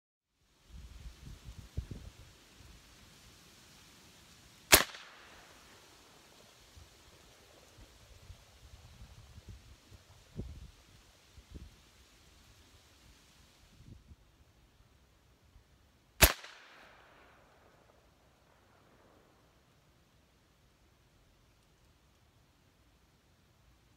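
AirForce Texan .357 big-bore PCP air rifle firing twice, about eleven seconds apart, each shot a sharp loud report with a short echo trailing off. Soft low thumps come in between.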